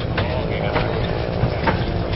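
Wind buffeting the microphone in a steady low rumble, under faint chatter of people nearby and a couple of light knocks.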